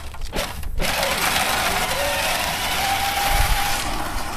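Electric drive motors of a John Deere battery-powered ride-on toy whirring steadily under the kids' weight, with a faint thin whine in the second half. The sound dips out briefly at the very start.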